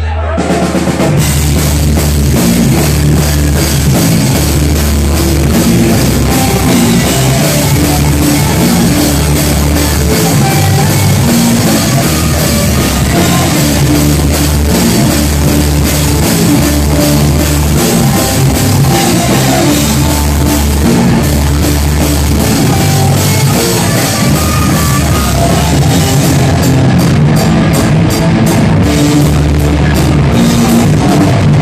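A heavy metal band playing live: distorted electric guitars, bass guitar and a drum kit with pounding bass drum. The full band comes in loud about a second in, and the riff turns choppy and stop-start near the end.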